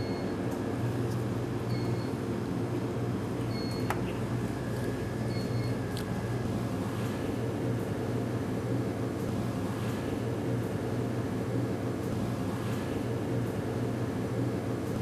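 Steady hum of laboratory equipment and ventilation. A short, high electronic beep sounds four times, about every two seconds, in the first half, with a few faint clicks.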